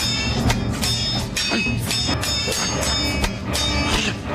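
Film fight soundtrack: a sword and a spear striking each other in quick succession, about two to three metallic clangs a second, each ringing on briefly, with music underneath.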